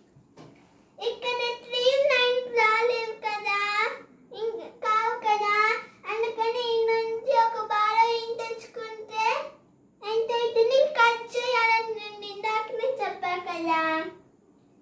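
A young girl's voice, high and sing-song, talking or chanting almost without a break, with brief pauses about four, six and ten seconds in.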